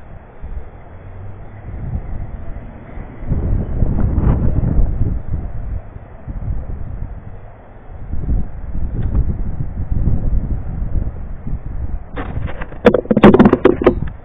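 Wind buffeting the microphone in low, rumbling gusts, with a quick burst of clattering knocks near the end.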